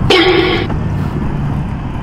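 Motor scooter engine idling with a steady low rumble. Near the start there is a short, flat tone of about half a second that starts and stops abruptly.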